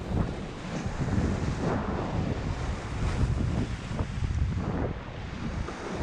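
Ocean surf surging and washing over a rock ledge, mixed with wind buffeting the microphone.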